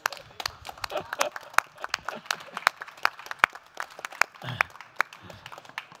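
An audience applauding, with distinct, scattered hand claps, one of them from a man on stage clapping along. A few voices and laughter are briefly mixed in.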